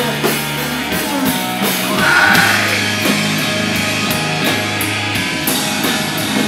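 Hardcore punk band playing live: distorted guitar and bass holding low notes over a drum kit, with cymbals struck on a steady beat.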